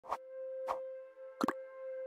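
Synthesized intro sound effects: three short pops, the last a quick double, over a steady held synth tone.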